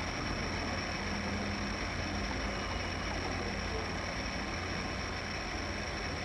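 A steady low rumble with an even hiss over it and a faint thin high whine, unchanging throughout.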